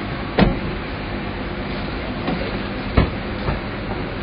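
Two sharp car-door thuds, about half a second in and again about three seconds in, with a lighter knock just after, over a steady rush of outdoor background noise.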